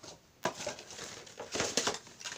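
Boxes being handled by hand: a sharp knock about half a second in, then a quick flurry of rustling and scraping strokes near the end.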